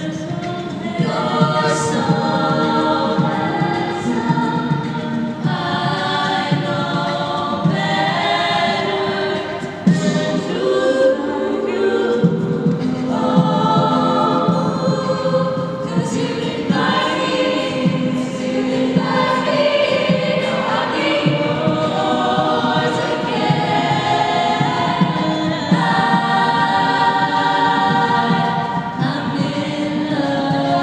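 All-female a cappella group singing in layered close harmony with no instruments. The low bass part drops out briefly about ten seconds in, then returns.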